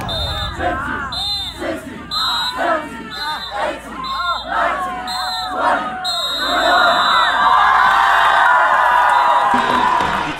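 Football team shouting together in rhythm during group push-ups, a burst of voices about once a second. About six seconds in it breaks into sustained yelling and cheering.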